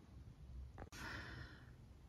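Near silence with one faint exhale, like a sigh, and a single small click just before it.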